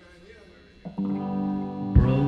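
A song's guitar intro: after a faint stretch, a ringing guitar chord comes in just before a second in and sustains. A sharp hit lands at the very end.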